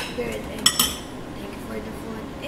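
Cutlery clinking against dishes on a table: two sharp clinks in quick succession less than a second in, then quieter table noise.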